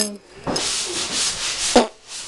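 A steady scraping rub for about a second, ending in a sharp click near the end.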